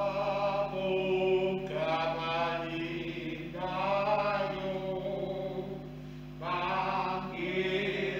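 Liturgical singing in slow, chant-like phrases with long held notes. There is a short break about six seconds in before the next phrase begins, and a steady low hum runs underneath.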